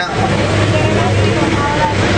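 A motor vehicle's engine running with a steady rumble and low hum.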